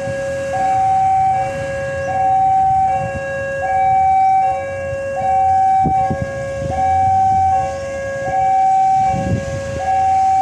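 Railway level-crossing warning alarm sounding, two electronic tones alternating high and low at about one cycle a second and holding a steady pitch. This is the warning that a train is approaching. A low rumble builds near the end.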